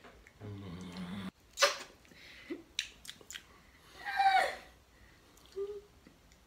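Kissing and lip smacking: a low hum, then a sharp wet smack of lips about one and a half seconds in, followed by a few small smacks as the lips part and the condiment is tasted. A short voiced sound near the middle is the loudest thing.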